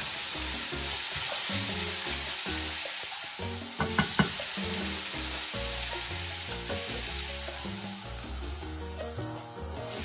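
Tuna, tomato and onion frying with a steady sizzle in a stainless steel pan as they are stirred with a wooden spoon, with a few sharp knocks of the spoon against the pan about four seconds in.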